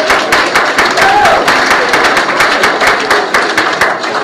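Congregation applauding: many hands clapping in a dense, irregular patter that eases off near the end.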